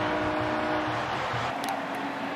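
Steady stadium ambience from a football broadcast: an even noisy wash with held tones that fade out about a second in.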